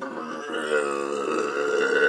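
A man imitating a growling stomach with his voice: one long, low, steady growl held for a couple of seconds.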